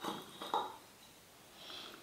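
Faint handling sounds as a wooden disc is fitted onto a threaded steel rod: two light knocks near the start and about half a second in, then a softer, higher scrape or clink near the end.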